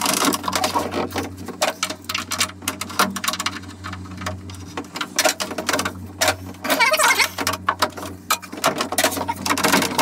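Irregular metallic clicking and clattering inside a classic Mini's steel door shell as the window regulator is worked by hand to wiggle its arms off the runners. A steady low hum runs underneath.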